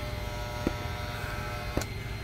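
Electric hair clippers running with a steady buzz, held off the head and not cutting. Two faint clicks, one under a second in and one near the end.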